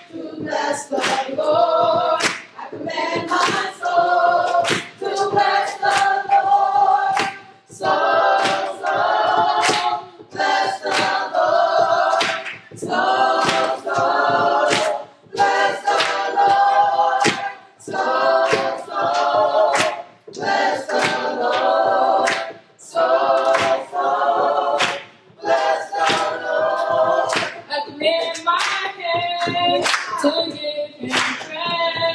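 A youth gospel choir of children and teens singing without accompaniment, phrase after phrase, with hand claps keeping the beat.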